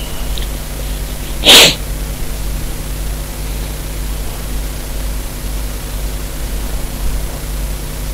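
A single short, breathy burst from a person, about a second and a half in, over a steady low hum and hiss.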